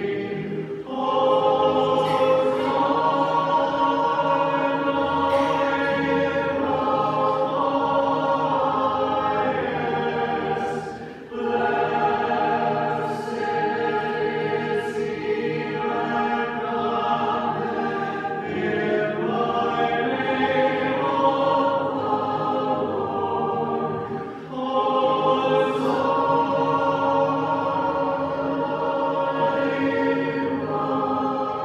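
Orthodox church choir singing unaccompanied liturgical chant in several-part harmony. The notes are held in long phrases, with short breaks about a second in, near eleven seconds and near twenty-four seconds.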